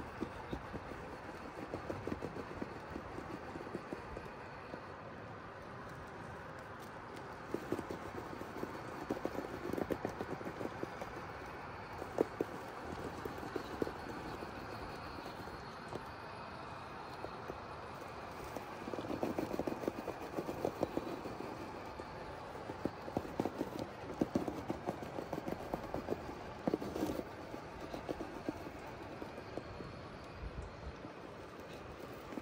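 Axial SCX6 1/6-scale RC rock crawler climbing rock: its electric motor and drivetrain running steadily, with bursts of clicking and clattering as the tires and chassis grind and scrape over the stone, thickest in the second half.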